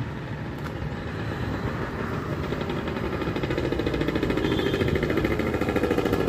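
Road traffic with a motor vehicle's engine running close by, growing steadily louder.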